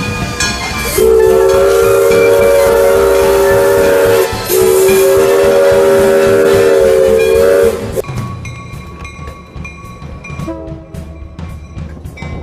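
Steam locomotive's chime whistle sounding two long blasts of about three seconds each, several notes together, with a short break between them. Music takes over after the second blast.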